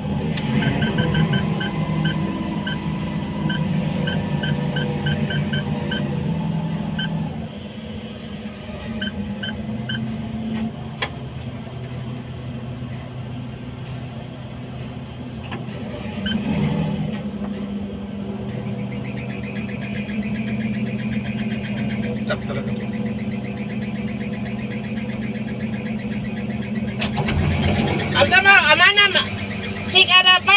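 Steady low machinery hum, with a rhythmic high chirping, about three chirps a second, for the first seven seconds.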